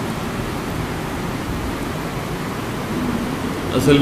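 Steady hiss of background noise in a pause between a man's speech, with his voice resuming near the end.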